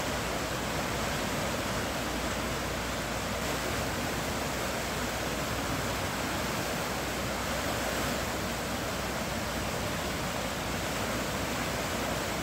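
Muddy floodwater rushing down a swollen river, a steady, unbroken rush of water.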